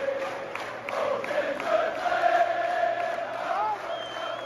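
Football supporters in a stadium stand singing a chant together, holding long sustained notes.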